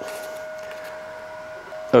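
A steady, high-pitched hum from a machine running in the room, which breaks off briefly near the end.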